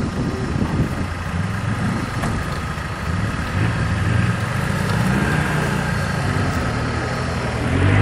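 Quad bike (ATV) engine running while the machine sits bogged in deep mud, its note growing stronger and a little higher about halfway through.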